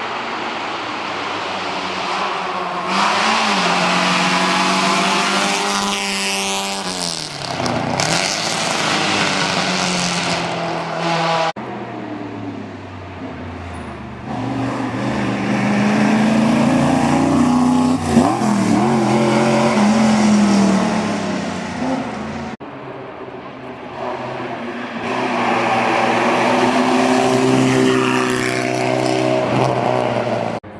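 Race car engines running hard up a hill and passing close by, their pitch climbing through the revs and dropping as each car goes past. There are three separate passes, each cut off abruptly: the first ends about a third of the way in, the second about three quarters of the way in.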